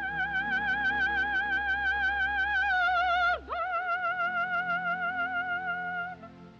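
A soprano holding a high sung note with a strong, even vibrato over a soft orchestral accompaniment. About three and a half seconds in, the voice swoops down and straight back up, then holds the note again.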